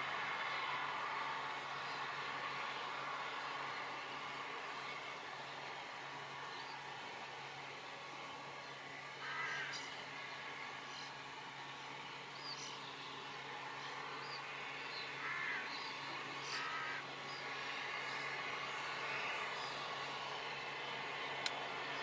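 Faint steady background hum and hiss, with a few short, scattered bird calls: one about nine seconds in and two more around fifteen to seventeen seconds.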